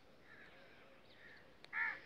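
A single crow caw near the end, short and harsh, over faint chirping of small birds.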